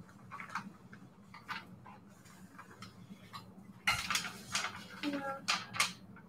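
Steam iron pushed over a sheet of coffee-dyed paper, with light knocks and scrapes. About four seconds in, louder paper rustling as the pressed sheet is picked up and handled.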